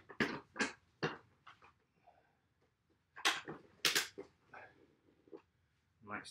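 A man's short, breathy grunts and exhalations of effort, in a loose string with pauses, as he strains in a side split while cranking a splits-stretching machine wider.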